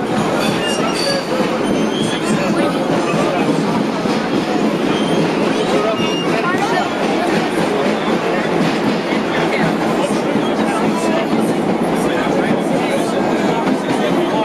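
Vintage R1/R9 subway train running at speed through a tunnel, heard from inside the front car: a loud, steady rumble and rattle of wheels and car body, with short high squeaks now and then.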